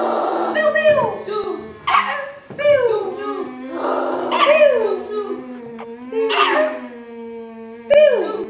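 Wordless voices: a steady low hum held under repeated falling, wailing glides, like howls or whimpers. Sharp breathy hisses cut in about every two seconds.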